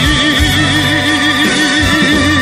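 A male singer holding one long sung note with a steady, even vibrato over a backing track.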